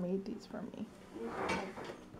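Indistinct speech in two short stretches, one at the start and one a little past the middle.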